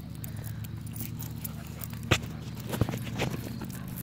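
Footsteps on pavement while walking a dog on a leash. There are a few sharp knocks, the loudest just past halfway, over a steady low hum.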